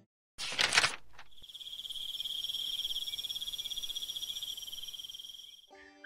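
An insect trilling steadily at one high pitch in rapid, even pulses, cricket-like. It starts after a short burst of noise about half a second in and stops just before the end.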